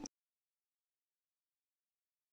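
Digital silence: the sound drops out completely, with no room tone.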